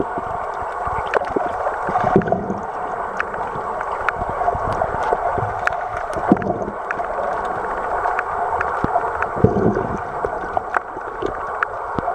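Underwater ambience picked up by a submerged camera: a steady muffled rush of water with many scattered sharp clicks.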